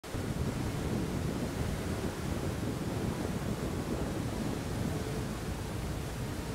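Surging muddy floodwater rushing and churning in a continuous dense wash of noise, heaviest in the deep end, with wind buffeting the microphone.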